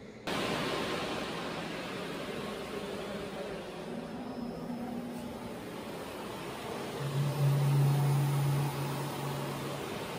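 Steady rushing air noise, typical of an electric blower keeping an inflatable sculpture inflated. It starts abruptly just after the start, and a low steady hum joins in more loudly for a few seconds near the end.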